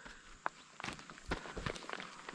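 Faint footsteps on a dry, crumbly earth and grass slope: one sharp tick about half a second in, then irregular soft crunches of steps climbing.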